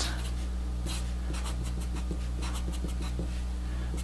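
Felt-tip marker writing on paper: a quick, irregular run of short pen strokes, over a steady low electrical hum.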